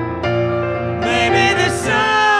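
A woman and a man singing a duet in long held notes, with piano accompaniment.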